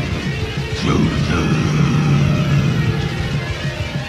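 Raw, lo-fi black metal/noise recording from a cassette demo: a dense wall of distorted noise over a steady low drone. About a second in, a swooping screech sweeps down and back up.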